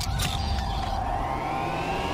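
Electronic segment-transition sound effect: a low rumble under a held tone, with tones that glide upward in pitch through the second half.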